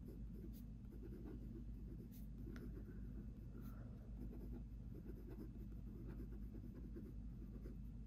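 Gel ink rollerball pen writing cursive on spiral-notebook paper: faint, soft scratching of the pen strokes over a steady low hum.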